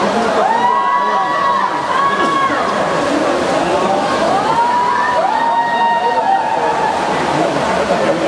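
Spectators yelling long, drawn-out cheers at swimmers in a race, two voices overlapping at a time, each shout held on one pitch and falling off at the end, twice in a row. Underneath is a steady wash of splashing and crowd noise echoing around an indoor pool hall.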